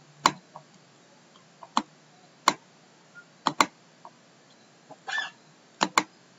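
Computer mouse clicks while a file is opened: several sharp single clicks at irregular intervals, with a quick double click about halfway through. A short rustle comes shortly before the last click.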